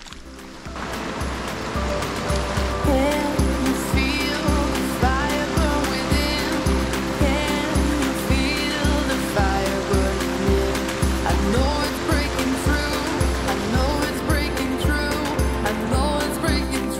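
Background music with a steady, regular beat and melodic lines, fading in about a second in.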